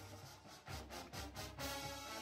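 Background music with pitched instruments, with a quick run of drum hits in the middle.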